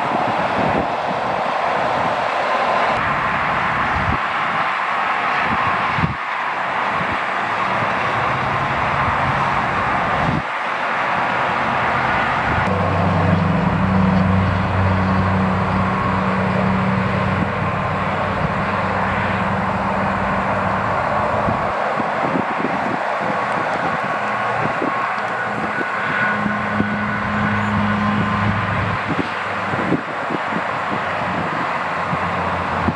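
Steady rush of freeway traffic going by. A low steady hum joins it for several seconds in the middle and again near the end.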